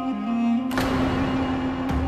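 Dramatic background score with a long held note; about two-thirds of a second in, a sudden loud rush of noise comes in over it, and another sharp hit comes near the end.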